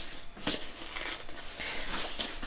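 Hands picking and tearing at the packing tape and cardboard flaps of a Priority Mail shipping box, which has no pull tab: irregular scratching and crinkling with a sharp click about half a second in.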